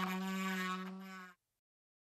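Proxxon BSG 220 drill-bit sharpener's motor running with a steady hum. It fades out and stops about a second and a quarter in.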